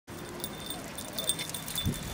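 Small metal pieces jingling lightly, a handful of short, high tinkles, like tags, keys or a small bell. A low thump of handling or a footstep comes near the end.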